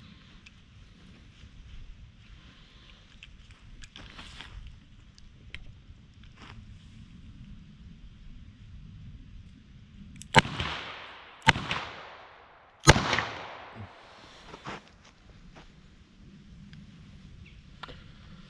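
Three shots from a small .32 revolver, an H&R 732, firing Lapua wadcutters, each a little over a second apart, the last the loudest.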